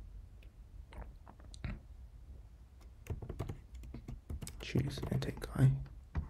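Typing on a computer keyboard, scattered key clicks through the first few seconds. Near the end a voice mutters under its breath, the loudest part.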